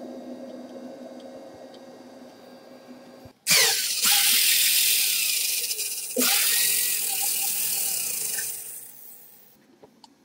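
Corded electric drill turning the threaded screw rod of a homemade scissor jack to raise it. The drill starts suddenly about three and a half seconds in, runs, starts again with its pitch climbing at about six seconds, and stops near nine seconds.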